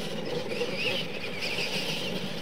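Radio-controlled monster trucks racing on dirt, their motors and gears whining, the pitch wavering up and down with the throttle.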